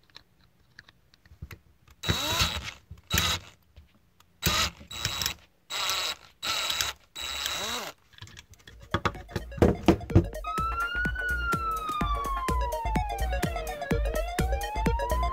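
A drill running in about six short bursts, drilling out the rivet on the base of a die-cast toy car. From about ten seconds in, a siren wail slides down and back up over music with a quick beat.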